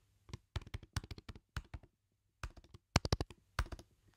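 Keystrokes on a computer keyboard typed in quick irregular runs, with a brief pause a little past halfway: a password being typed in.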